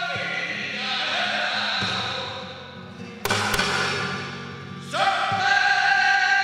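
Male flamenco cante singing accompanied by a flamenco guitar. A held sung note ends at the start, the guitar plays on with two sharp strummed strokes about three seconds in, and the voice comes back in with a rising note about a second before the end.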